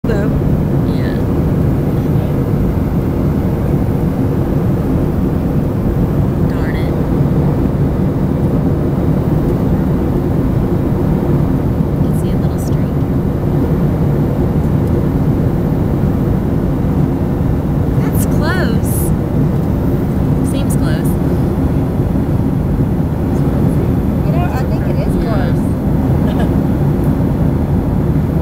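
Steady cabin noise of an airliner in flight on its descent: a loud, even low drone of engines and rushing air, with faint brief voices now and then.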